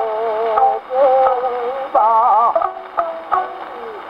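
A Taishō-era acoustically recorded Nitto 78 rpm disc of a kouta (ukiyo-bushi) playing on a Victor Victrola acoustic gramophone: a geisha's wavering, ornamented sung line with surface hiss and the narrow, boxy tone of an early acoustic recording. The voice is quieter in the second half.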